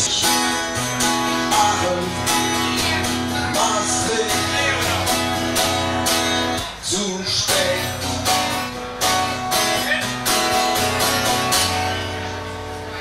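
Acoustic guitar strummed in a steady rhythm of chords, amplified through a PA, with a brief break about seven seconds in.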